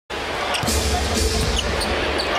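Basketball being dribbled on a hardwood arena court, over arena music and crowd noise.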